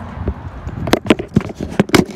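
Rustling, then a quick run of sharp clicks and knocks, about half a dozen in the second half: handling and movement noise from a phone camera being carried while walking.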